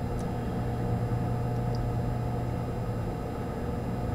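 Steady low machine hum with a faint even hiss, and a couple of tiny ticks.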